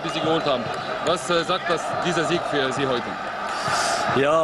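A man speaking, over steady background noise.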